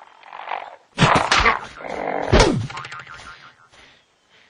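Cartoon sound effects: a soft patch at first, then a run of sudden loud hits about a second in, and a loud sound sliding down in pitch a little past the middle, fading out near the end.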